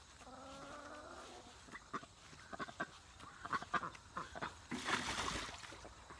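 Domestic duck giving one drawn-out call in the first second, then scattered splashes and flapping as it scrambles out of a metal water trough, loudest in a burst of splashing about five seconds in.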